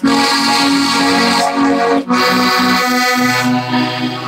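Accordion (the 'wee box') playing a traditional tune: a melody of short notes over chords, broken by brief gaps about two seconds apart. A held low bass note comes in near the end.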